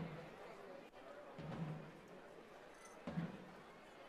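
Faint, low, muffled drum beats, one about every second and a half, over a faint crowd haze.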